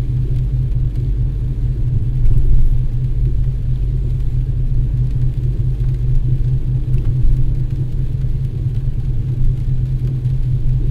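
Steady low rumble inside a car's cabin as it drives slowly along a wet street in the rain, with only faint higher noise above the drone.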